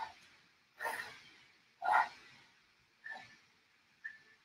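A woman's short, forceful exhalations, about one a second, in time with her reps of a dumbbell clean and press.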